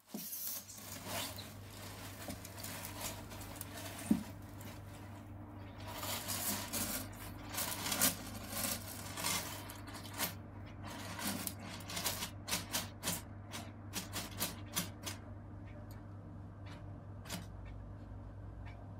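Savannah monitor scraping and shifting on gravel substrate while it swallows a whole rat, giving irregular rustles and sharp clicks that come thickest in the middle and thin out near the end. A steady low hum runs underneath.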